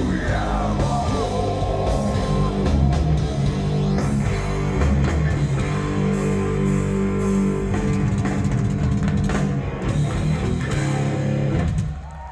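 Heavy metal band playing live and loud through a large outdoor PA, with distorted electric guitars and a drum kit. The song stops abruptly just before the end.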